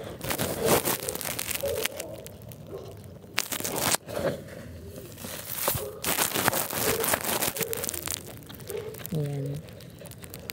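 Chunks of dry coconut husk and potting mix crackling and rustling as they are handled and pressed around the plant's stems in a plastic pot, a string of irregular crackles.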